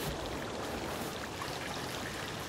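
Steady trickle and splash of water from a stone courtyard fountain.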